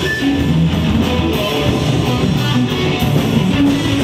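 Live rock band playing loudly: electric guitar and bass guitar over a drum kit, an instrumental stretch without vocals.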